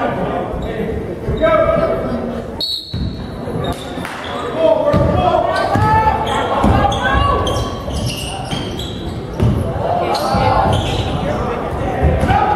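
Basketball game sounds echoing in a large gym: a basketball bouncing on the hardwood floor, mixed with players' and spectators' voices.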